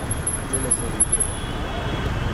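Steady traffic and engine rumble from the street, with faint voices of people nearby.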